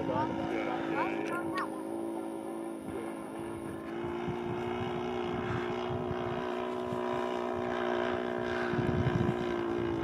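Engine of a radio-controlled Hangar 9 P-47 Thunderbolt model running steadily in flight, a continuous droning note that rises slightly in pitch about four seconds in.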